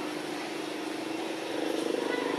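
A steady low motor hum, getting a little louder about one and a half seconds in.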